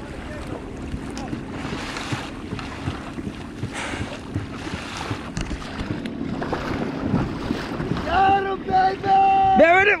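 Wind buffeting the microphone and seawater sloshing and splashing around a pedal kayak's hull as it is pedalled hard across open ocean. Near the end a man calls out in a few drawn-out shouts.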